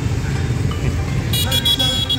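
Street traffic rumble, then a vehicle horn sounding a steady high-pitched toot about one and a half seconds in.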